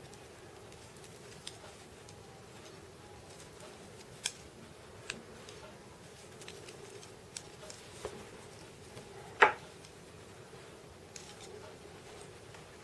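Knitting needles clicking and tapping against each other as stitches are bound off by hand. A few sparse, short clicks, the loudest about nine and a half seconds in, over quiet room tone.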